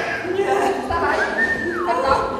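Voices on stage, with a single high whistle-like tone that holds steady and then slides down near the end.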